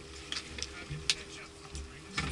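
A few sharp clicks over a low rumble and a faint steady hum.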